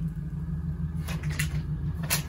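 Steady low background hum, with a few soft rustles and taps about a second in as a small item is pushed into a fabric backpack's zip pocket.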